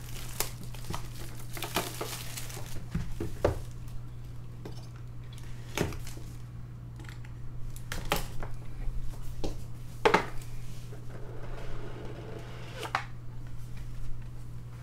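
Plastic shrink wrap crinkling and tearing as a Leaf Metal football card box is unwrapped and its cardboard lid worked open, with scattered clicks and scrapes over a steady low hum.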